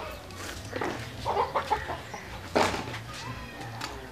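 Chickens clucking in short bursts, the loudest call coming a little after halfway, over a low steady hum.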